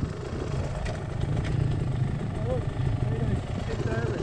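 Dirt bike engines idling with a steady low putter.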